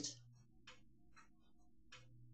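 Near silence: faint, evenly spaced ticks about twice a second over a low steady hum.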